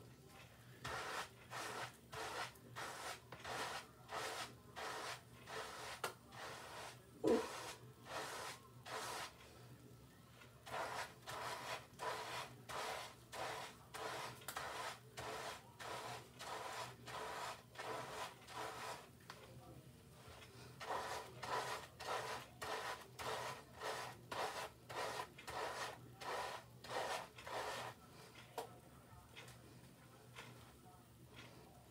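Wave brush bristles stroking repeatedly through shampoo-lathered short hair, a scratchy brushing at about two strokes a second in three runs with short pauses between. A single sharper knock about seven seconds in.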